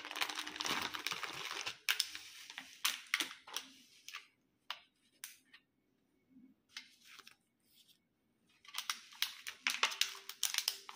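Clear plastic candy tray and its wrapping crinkling and clicking as it is handled and opened: a busy run of crackling at the start, scattered clicks, a quieter stretch in the middle, then crinkling again near the end.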